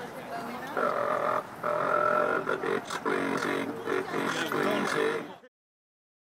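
A Dalek costume's electronically distorted, monotone voice speaking in bursts. It cuts off suddenly about five and a half seconds in.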